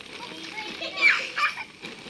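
Small children's voices as they play, with chatter and a high, gliding cry about halfway through.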